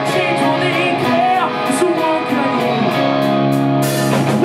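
Live rock band playing: a man singing lead over guitar and drums, with a cymbal crash near the end.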